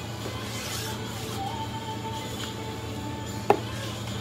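Long knife slicing through raw silverside beef on a plastic cutting board, with faint background music and a steady low hum. A single sharp tap comes about three and a half seconds in.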